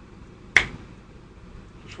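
A single sharp click about half a second in, short and sudden against a quiet room.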